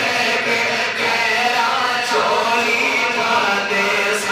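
A man's voice, amplified through a microphone, chanting a devotional naat recitation in long, held melodic lines without a break.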